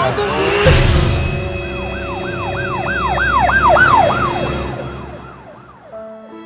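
Comedy sound effect of a car hitting a pedestrian: a sudden loud crash less than a second in, followed by an ambulance siren wailing rapidly up and down that fades away toward the end.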